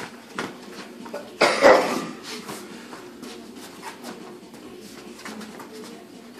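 Boxing sparring: scattered short thuds and slaps of gloves and feet on the ring canvas, with a brief voice-like sound about one and a half seconds in.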